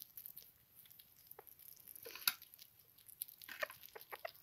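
Faint, scattered ticks and small scrabbling noises of sugar gliders moving and nibbling in their cage, with one sharper click a little over two seconds in.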